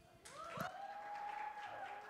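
Light, scattered applause from the audience. A clear high tone rises in and holds steady for about a second over it.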